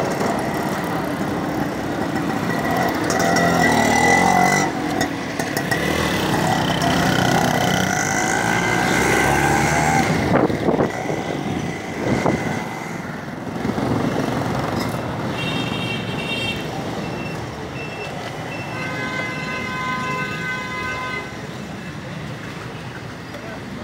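Busy street traffic: engines of passing vehicles and motorcycles, with horns honking several times, including two longer honks in the second half.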